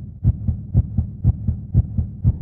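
Horror-soundtrack pulse: steady low thumps, about four a second, over a low hum, like a heartbeat.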